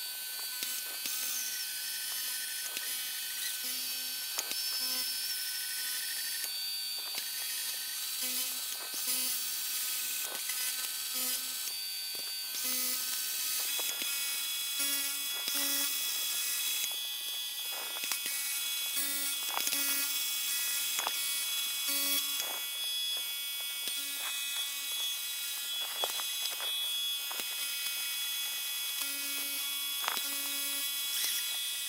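Milling machine spindle running as an end mill faces off the tops of two cast model steam engine cylinders in a vise. The motor whine is steady and high, with short low buzzes coming and going every second or two and scattered small clicks from the cut.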